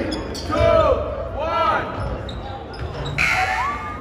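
A basketball being dribbled on a hardwood gym floor, a few low thuds in the hall, with sneakers squeaking on the court in short rising-and-falling squeals.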